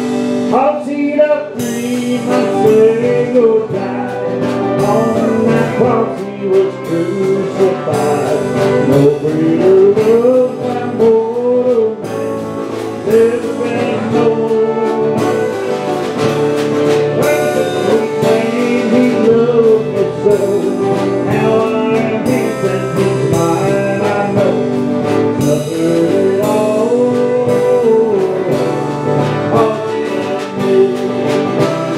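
Live country gospel band playing: fiddle carrying a bowed, sliding melody over acoustic and electric guitars and a drum kit keeping a steady beat.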